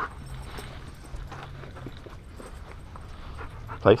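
Belgian Malinois whimpering softly while on a leash, a sign of the dog's anxiety. The sound is faint, and a single sharp spoken "Place" command comes just before the end.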